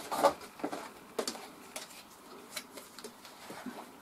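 Soft, scattered clicks and handling noises from a roll of wide elastic and a tape measure being picked up and handled.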